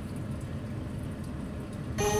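A low, steady rumble with no speech or clear tune, running evenly throughout.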